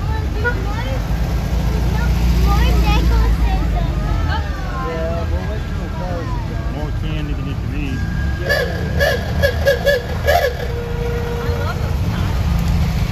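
Slow-moving VW parade cars driving past, including a vintage air-cooled Beetle, give a low engine rumble that is loudest a couple of seconds in, with onlookers' voices over it. Near the end comes a quick run of short, loud high-pitched sounds.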